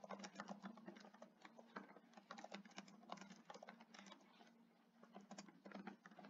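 Faint, irregular clicking of computer keyboard keys being typed, with a brief pause about three-quarters of the way through.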